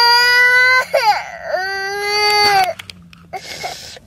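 Infant crying in two long wails, the second lower in pitch than the first, with a short wavering break between them about a second in; the crying drops away near the end.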